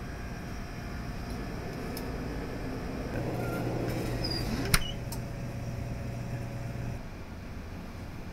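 Steady hum of laboratory equipment, with a deeper hum that comes in about three seconds in and stops near seven seconds, and a single sharp click a little past halfway.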